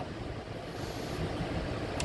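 Steady background noise with no distinct event: an even low hum and hiss of room tone.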